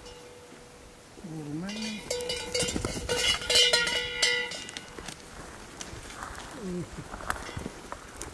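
A metal bell hung on grazing cattle clanking repeatedly for a couple of seconds, in the first half.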